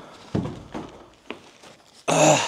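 A foam-wrapped ENGWE P20 folding e-bike is set down on the floor with a thump shortly after the start. Quieter handling noise follows, with a faint click about a second later.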